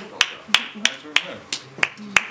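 Sharp claps in a slow, steady rhythm, about three a second, with low voices talking between them.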